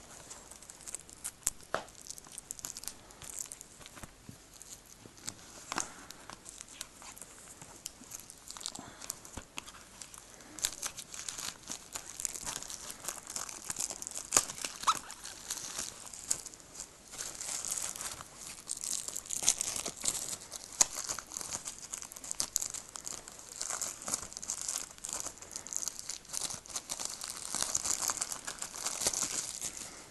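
Plastic shrink-wrap on a DVD case being picked at, torn and peeled off by hand: a long run of crinkling and tearing with many small ticks, which grows busier about ten seconds in.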